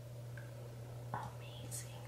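Quiet room tone with a steady low hum, a faint click about a second in, and soft breathy mouth sounds near the end.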